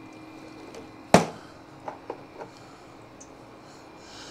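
NewAir ClearIce40 countertop clear-ice maker running with a faint steady hum. A sharp knock comes about a second in, followed by a few light clicks, as the unit is handled.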